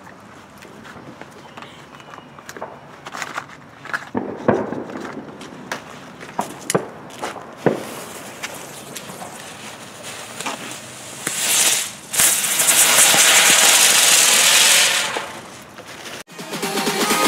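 Weco Pyrokreisel ground-spinner firework: scattered sharp crackles and pops for about eleven seconds, then the spinner catches with a loud steady hiss for about three seconds before dying away.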